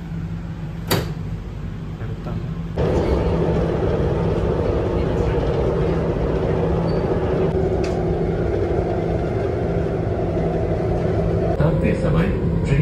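Cabin noise inside a RapidX (Namo Bharat) rapid-transit train: a steady hum with a sharp click about a second in. About three seconds in it turns into a louder, steady rumble and rush of the train running along the elevated track.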